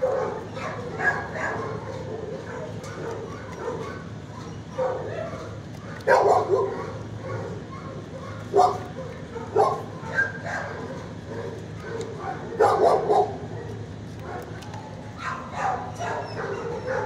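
Dogs barking in a shelter kennel block, short loud barks and yips coming every second or few, with a steady background of more dogs.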